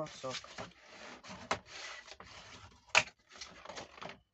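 A bone folder rubbing and scraping along the creases of folded kraft card stock as the folds are burnished. There is a light tap about one and a half seconds in and a sharp knock about three seconds in.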